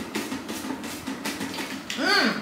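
Paper lottery slips tumbling inside a lottery box as it is tilted and shaken to mix them: a run of light, irregular rattles and rustles.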